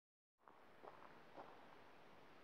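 Near silence with a few faint steps crunching on a gravel track, roughly half a second apart, over a low outdoor hiss.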